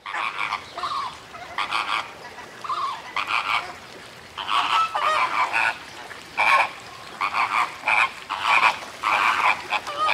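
A flock of flamingos honking, with short goose-like calls that follow one another and overlap throughout.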